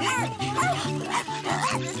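A cartoon pet amoeba gives a run of short, excited dog-like yips and barks, each one rising and falling in pitch, over upbeat background music with a bouncing bass line.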